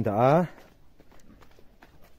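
Footsteps on a packed-earth path, faint and irregular, after a short spoken phrase in the first half-second.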